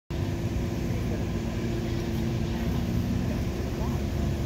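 Steady low vehicle rumble with a steady hum running through it.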